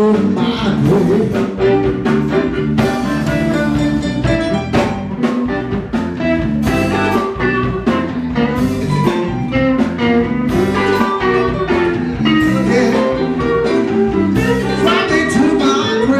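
A live blues band playing loudly and steadily: electric guitar, bass guitar and drum kit, with a singer's vocals over them.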